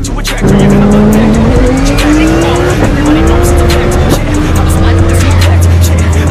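Lamborghini Huracán V10 engine accelerating hard, heard from inside the cabin. Its pitch climbs, drops at two upshifts about three and four seconds in, and climbs again, over hip-hop music with a steady beat.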